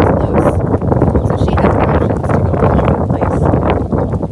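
Wind buffeting the microphone: a loud, uneven rushing noise.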